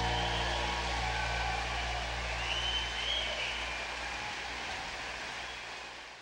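The tail of a track fading out: a steady wash of noise with a few faint whistle-like tones, sinking slowly in level.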